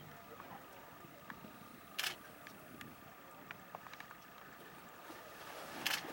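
Faint outdoor quiet broken by a few short, sharp clicks, the loudest about two seconds in and another just before the end.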